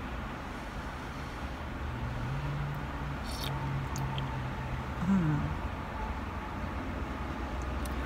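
A woman's closed-mouth "mmm" hum while chewing a mouthful of hot food. It starts about two seconds in, holds low and steady for about three seconds, then briefly rises and falls in pitch. A low steady rumble runs underneath.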